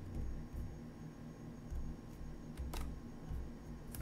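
Computer mouse clicking twice, sharp and brief, about a second apart near the end, over a low steady hum of room noise.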